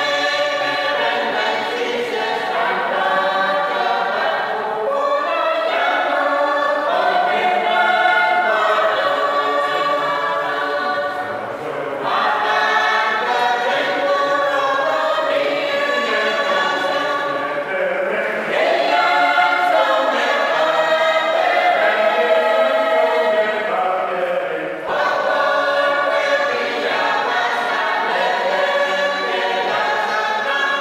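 A small mixed choir of men and women singing a hymn together in parts, phrase after phrase with brief breaths between.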